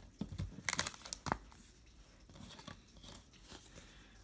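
Trading cards being handled and slid through a small stack by hand: a few short crisp flicks and rustles in the first second and a half, then faint quiet handling.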